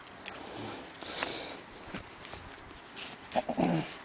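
A dog moving about close by, with scattered clicks and scuffs, then a short pitched vocal sound from the dog near the end, the loudest part.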